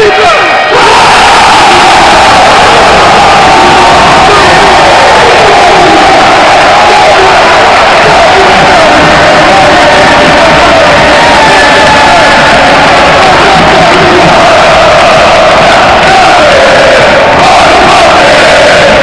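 A large basketball arena crowd singing and chanting in unison, very loud throughout and pushing the recording to its limit.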